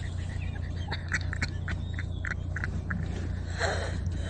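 A donkey's lips and teeth rubbing and squeaking on a car's window glass as it mouths at it: a quick run of short squeaks from about a second in to about three seconds in.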